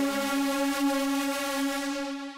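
Arturia MiniFreak V software synthesizer playing a detuned supersaw lead with soft-clip distortion, holding one steady, sustained note.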